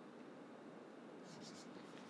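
Faint chalk writing on a blackboard, with a few light scratching strokes in the second half over quiet room tone.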